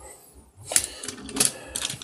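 A few sharp plastic clicks and taps from small Multimac toy pieces being handled on a desk, coming one at a time about half a second apart after a brief quiet start.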